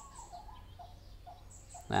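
Small birds chirping: a string of short, faint chirps repeating every few tenths of a second.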